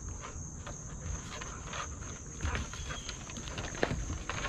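Basset hounds tugging at a flirt pole's rope toy: irregular scuffs and clicks on a wooden deck, with a sharper knock near the end, over a steady high-pitched drone of crickets.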